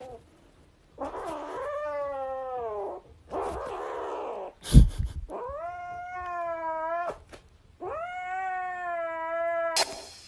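A kitten giving three long, drawn-out yowling meows, the first falling in pitch, each with a breathy rasp before it. There is a single sharp click about halfway through.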